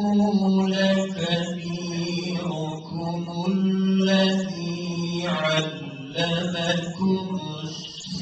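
A man reciting the Qur'an in Arabic, chanting melodically in long held notes with short pauses for breath.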